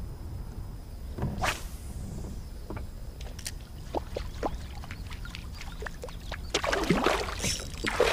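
Reel and gear handling in a fishing kayak: steady low wind and water noise with scattered small clicks and knocks. There is a short whoosh about a second and a half in, and a louder rush of noise near the end.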